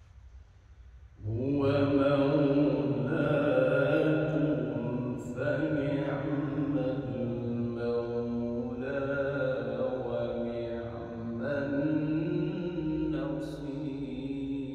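A man's voice reciting the Quran in the melodic qirat style, with long held notes that bend in pitch. It comes in about a second in, after a short pause for breath.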